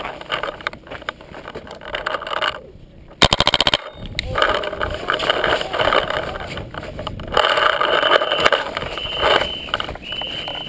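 A paintball marker firing a rapid burst of shots, more than ten in under a second, about three seconds in, amid rustling movement and wind noise on the microphone.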